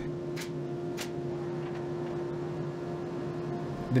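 Pneumatic brad nailer firing twice, about half a second apart in the first second, driving brads through a particleboard stop into the jig. A steady low hum runs underneath.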